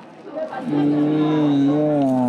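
A man's long closed-mouth "mmm" of enjoyment with his mouth full of food, starting about half a second in and held on one steady note.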